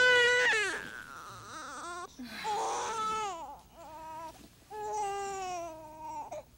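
Infant crying: a series of about five long wails, the first one the loudest.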